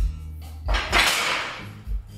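A lifter's loud, forceful breath out under the strain of a heavy dumbbell bench press, starting under a second in and fading over about a second. Background music with a steady bass beat plays throughout.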